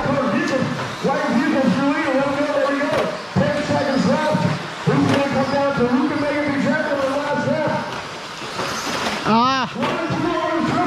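A man's voice calling the last seconds of a radio-controlled car race, talking almost continuously with the words unclear. Near the end there is a short pitched sound that rises and then falls.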